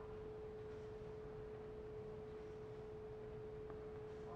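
Faint steady single-pitch hum over low background hiss, unchanging throughout.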